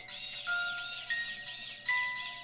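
Motion-activated animated clown figure playing a chiming electronic tune: single held notes stepping up and down over a fast, repeating high jingle. The tune is set off by motion in front of it.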